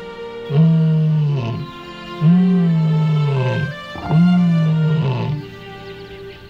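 Male African lion roaring: three long, deep roars in a row, each sliding down in pitch, with background music underneath.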